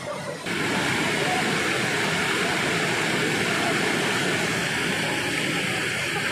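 Rushing water of a waterfall cascade pouring over rock: a loud, steady rush that starts abruptly about half a second in.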